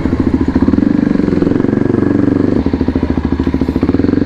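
Kawasaki Ninja sport bike engine running while riding at low town speed, a steady pulsing note whose pitch wavers with the throttle, dipping briefly about two and a half seconds in and then picking up again.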